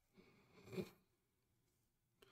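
Near silence, with one short faint sound a little before one second in.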